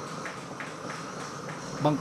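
Gas torch flame held on a copper plate: a steady hiss with faint crackles as the pitch stuck to the metal is burned and melted off.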